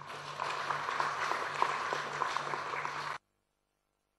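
Audience applauding: a dense patter of many hands clapping that cuts off suddenly a little over three seconds in.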